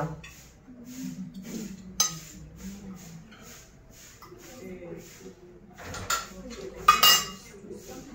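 A steel fork clinking against a stainless steel pot and pot lid as a piece of penne is lifted out to check whether the pasta is done. One sharp click about two seconds in, and two louder ringing clinks near the end.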